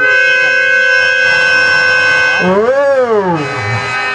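Harmonium holding a steady chord in a sung Telugu padyam (stage-drama verse). A little past the middle, a male singer's voice slides up and back down in one long glide.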